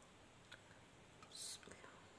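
Near silence: room tone with a few faint clicks and one brief soft hiss about one and a half seconds in.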